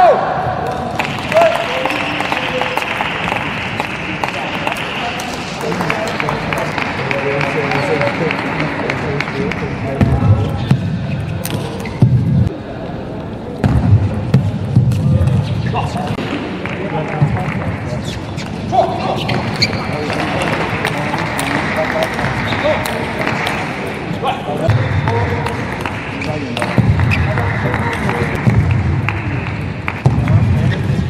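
Table tennis rallies: a celluloid ball clicking off rubber paddles and bouncing on the table, heard over steady arena crowd noise and voices.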